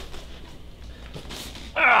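Faint rustle and scrape of a cardboard packaging box being lifted and slid out of its outer box, with one brief soft hiss about three quarters of the way in; a man's voice starts near the end.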